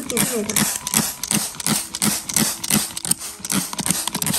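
Hand trigger spray bottle pumped rapidly, about four to five quick squeezes a second, each a short hiss of mist with a click of the trigger, as water is misted lightly over propagating succulent leaf cuttings.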